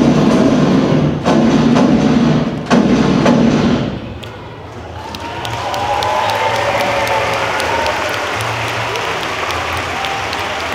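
Dance music playing, cutting off about four seconds in; then the audience applauds and cheers, swelling up and holding steady.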